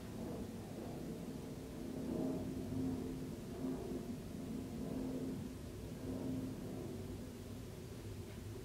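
A steady low hum of background noise, with no distinct events.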